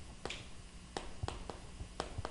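Chalk writing on a chalkboard: a run of sharp taps, about three a second, as the strokes of Korean characters are written, with a brief scrape of chalk about a quarter second in.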